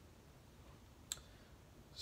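Near silence: quiet room tone, broken once by a single short, sharp click about a second in.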